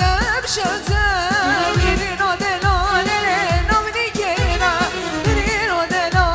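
Live halay dance music from a wedding band: a singer's wavering, ornamented melody over a steady low drum beat, with a stroke about every second.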